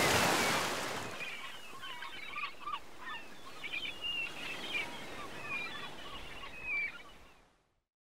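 A rushing whoosh that swells to a peak at the start and fades over about a second, then a string of short bird calls over a soft hiss, all fading out near the end.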